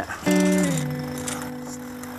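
Background music: a single chord struck just after the start, held and slowly fading.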